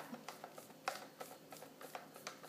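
Faint rustling and a few soft, scattered taps of a paper towel being pressed with the fingertips onto buttercream frosting on a cupcake.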